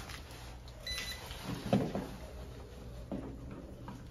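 A non-contact voltage tester gives one brief high electronic beep about a second in as it is held to a wall toggle switch to check for live voltage. Soft handling knocks follow.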